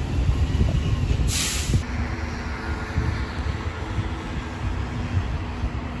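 Urban street traffic noise: a fluctuating low rumble of passing vehicles, with a short burst of hiss about a second and a half in.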